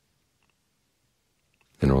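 Near silence with a couple of faint clicks, then a man's voice starts speaking near the end.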